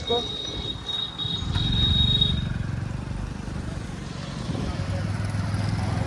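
Motorcycle engine running as the bike is ridden, with road and wind noise; the hum grows louder about a second and a half in and settles into a steady low note near the end. A thin, steady high tone sounds over the first two seconds or so.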